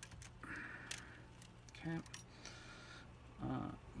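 Faint, scattered clicks and a short rattle of plastic parts being handled at a Prusa MK3S 3D printer's extruder, likely around the idler door.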